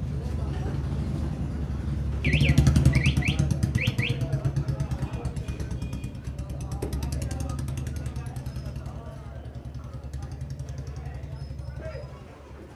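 A motor vehicle engine running with a rapid, even pulsing that swells about two seconds in and slowly fades, with three quick high chirps at its loudest.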